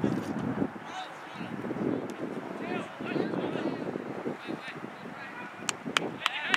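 Indistinct shouting voices of players and spectators across an outdoor soccer field, with a sharp knock near the end.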